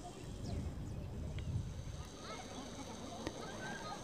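Faint outdoor ambience: scattered distant bird calls and chirps over a low steady rumble, with a small click a little past three seconds in.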